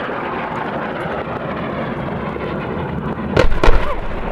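Airstrike bombs exploding: two heavy booms a fraction of a second apart, about three and a half seconds in. Before them, a steady rushing noise that fits warplanes overhead.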